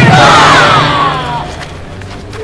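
Yosakoi dancers shouting together, a long group yell that falls in pitch and dies away after about a second and a half.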